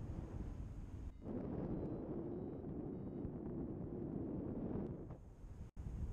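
Wind rushing and buffeting over the camera microphone of a paraglider in flight, with a few faint, short high beeps of a flight variometer in the middle. The sound cuts out for a moment near the end.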